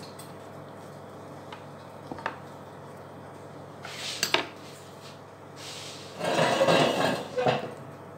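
Kitchen handling sounds: a knife and toasted burger buns on a stone countertop, with a few light clicks, a sharp clink of metal about four seconds in, and a louder stretch of scraping and rustling near the end.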